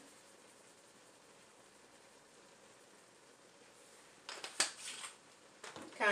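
Quiet room tone, then about four seconds in a few short clicks and clacks of spice jars being handled and set down on a kitchen counter, the sharpest about four and a half seconds in.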